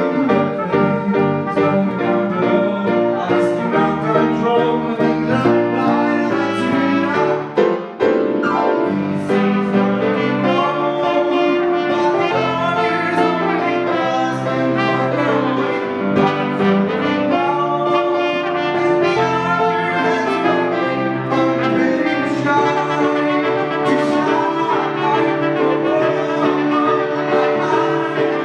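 Live band music: grand piano and electric bass under a brass lead melody line, with a brief drop in the music about eight seconds in.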